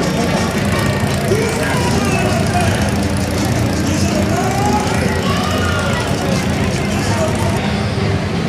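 Street parade ambience: many voices talking and calling over a steady vehicle engine, with music playing.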